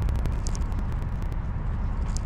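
Steady low wind rumble on the camera's microphone with road noise from riding an electric Onewheel board, and a few light clicks near the start.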